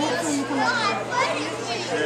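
Many children talking at once: overlapping chatter of young voices, with scattered words rising out of it.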